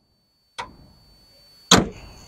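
A car door shut with a single sharp thump near the end, after a faint click about half a second in.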